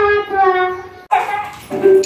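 A young girl's voice through a microphone, in long, drawn-out sing-song notes, breaking off suddenly a little past halfway. Recorded music starts near the end.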